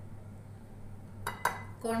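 A spoon clinking against a glass mixing bowl, a short quick cluster of clinks about a second and a half in, as chilli powder is added to the flour. A faint steady low hum runs underneath.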